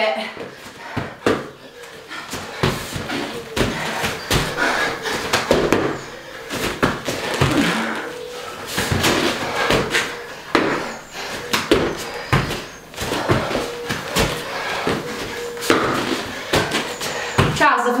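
Repeated thuds of feet landing and hands slapping a rubber-matted floor during burpee tuck jumps, several impacts a second, with the exercisers' breathing and grunts underneath.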